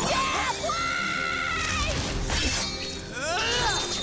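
Cartoon fight soundtrack: a character's long high-pitched yell, a crash about two seconds in, and another short shout near the end, over action music.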